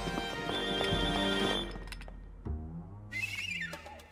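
Instrumental cartoon background music: held notes that fade about two seconds in, then a quieter low melody with a short high wavering tone near the end.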